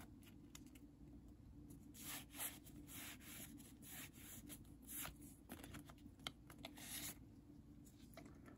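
Faint scraping and rubbing of a stack of trading cards being shifted through the fingers, in a handful of short strokes over a low room hum.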